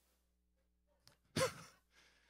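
A man's short sigh into a close handheld microphone, a brief falling voiced breath, followed by a soft breath in.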